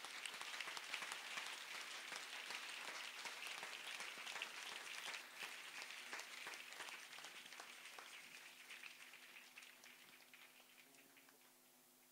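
Congregation applauding, a dense patter of many hands, fading away gradually over the last few seconds.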